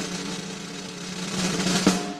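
Snare drum roll sound effect, building up and ending in a sharp final hit just before the end, used as a fanfare to introduce a trivia question.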